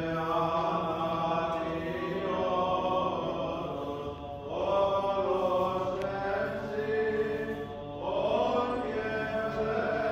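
Byzantine chant from a Greek Orthodox service: long, drawn-out sung phrases that glide from note to note, with brief breaks about four and eight seconds in.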